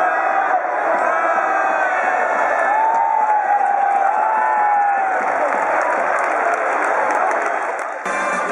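Baseball stadium crowd cheering and shouting: a dense, steady mass of voices with single calls poking through. One long call is held above the crowd about three seconds in, and the noise eases slightly near the end.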